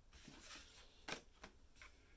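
Near silence broken by two or three faint, short clicks of cards being handled and laid on a tabletop, a little after a second in.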